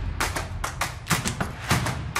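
Quick, irregular clicks and taps, several a second, over a low rumble: percussive sound effects of an edited title montage.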